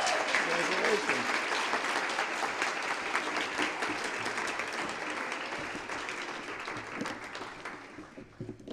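Audience applauding, the clapping gradually thinning and fading away toward the end.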